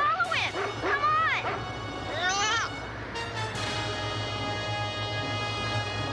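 Cartoon dog voiced in a few short calls that rise and fall in pitch over the first couple of seconds, then background music with long held chords.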